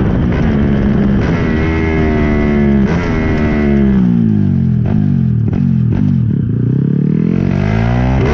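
Two tuned Yamaha Crypton X135 step-through moped engines at full throttle in a drag race. The engine note climbs, breaks at a gear change about three seconds in, then one engine's pitch falls while the other's rises so that their notes cross.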